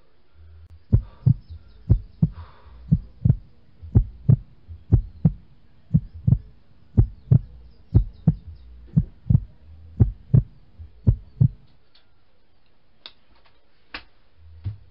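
Heartbeat sound effect: paired low thumps, about one lub-dub a second, going for roughly ten seconds and stopping a couple of seconds before the end.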